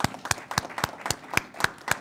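Small audience applauding, with one person clapping loudly close to the microphone in an even beat of about four claps a second.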